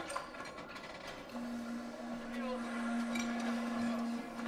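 Soundtrack of a film scene: background sound with a steady low tone that comes in about a second and a half in and holds.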